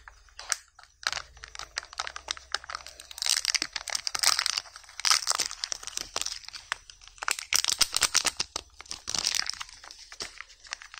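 Dense crinkling and crackling of a Kinder Joy egg's foil wrapper being picked at and peeled open by hand. It starts about a second in and grows busier and louder from about three seconds in.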